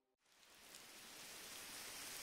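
A faint, even rain-like hiss fading in from near silence about a quarter second in and slowly growing: the rain ambience that opens a lofi track.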